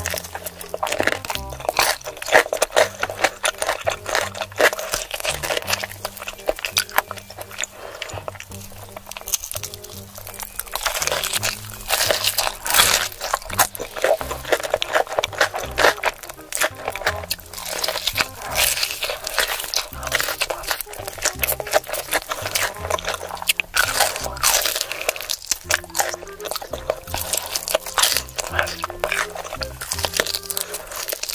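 Close-miked crunching and chewing of crispy sauced fried chicken, with dense crackles from the coating throughout, heaviest around the middle and again about three quarters of the way in. Background music with a low bass line runs underneath.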